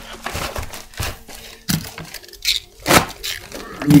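A plastic bubble mailer being handled close up, crinkling and crackling, with a scatter of sharp cracks, the loudest about three seconds in.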